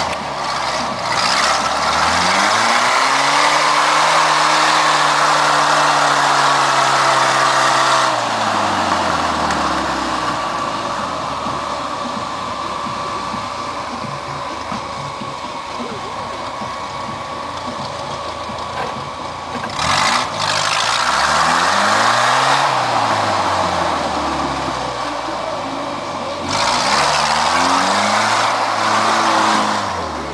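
Off-road trial 4x4's engine revving hard in surges as it climbs a rocky slope: the revs rise and are held high for several seconds at first, then drop to a low run, with two shorter surges near the end.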